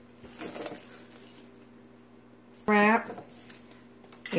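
Plastic cling wrap crinkling faintly as it is pressed around a glass jar, about half a second in. Near the end, a brief voice sound, the loudest moment, over a low steady hum.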